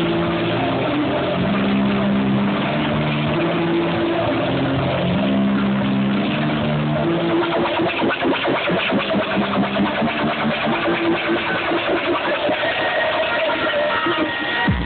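Electronic dance music from a DJ set, played loud over a festival sound system and picked up by a phone microphone with a dull, clipped top end. A stepping synth bass line plays first, then about halfway through a steady pulsing beat takes over.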